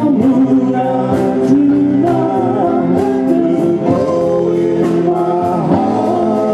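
A doo-wop vocal group performing live: a male lead sings long, wavering notes over backing harmonies and instrumental accompaniment with a steady beat of drum and cymbal hits.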